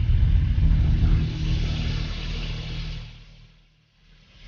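A deep rumbling sound effect with a steady low hum and a hiss above it, loud at first and fading away about three seconds in.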